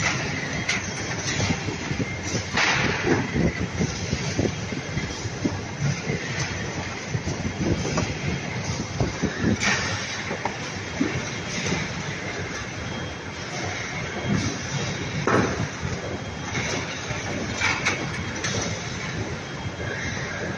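Large automatic corrugated-box folder gluer running: a steady, dense mechanical clatter of rollers and belts as folded blanks feed through, with a few louder knocks.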